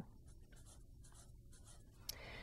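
Felt-tip marker writing numerals on paper, a few faint pen strokes.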